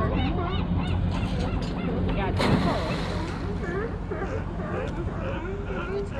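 Gulls calling in quick repeated series of short arched cries over a steady low hum, with a brief rush of noise about halfway through.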